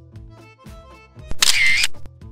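Camera shutter sound: a sharp click about a second and a quarter in, then a brief loud burst of shutter noise under half a second long, over background music.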